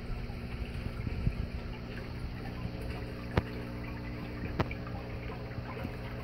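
Steady hum of the hydroponic tub's small pump running, with a faint trickle of nutrient solution. Two sharp clicks about three and a half and four and a half seconds in.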